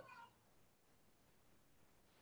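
Near silence in a pause between spoken sentences. The end of a word fades out in the first quarter second.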